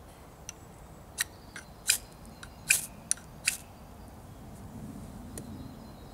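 The spine of a PLSK-1 knife scraped down a ferrocerium rod (fire steel), about six quick, sharp rasping strikes in the first half, a few fainter ones around them.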